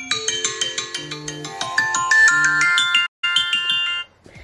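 iPhone alarm tone ringing: a fast melody of bright, chime-like mallet notes, broken for an instant about three seconds in, then cut off suddenly at the end as the alarm is stopped.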